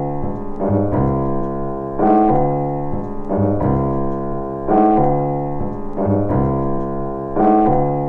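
Raw hip hop instrumental built on a looping piano phrase over low bass notes, the loop repeating about every two and a half seconds.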